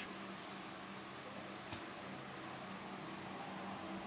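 Quiet room tone: a faint steady hum, with one short click a little under two seconds in.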